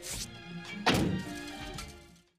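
Film score music with two heavy impacts: a thunk near the start, then a louder blast about a second in as a car bomb goes off.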